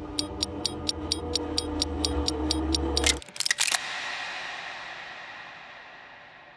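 Film soundtrack: a steady ticking, about four ticks a second, over a low drone and held notes, all cutting off suddenly about three seconds in. A few sharp hits follow, then a long ringing tail that fades away.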